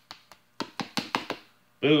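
A quick run of about five light taps, a spice shaker being tapped to shake paprika out.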